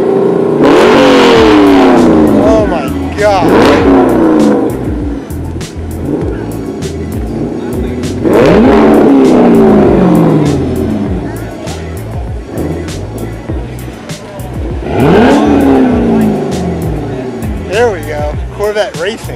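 A Corvette V8 with an aftermarket exhaust being revved four times, each blip rising quickly and then falling back slowly to a lumpy idle; the revs near the start and about 8 seconds in are the loudest.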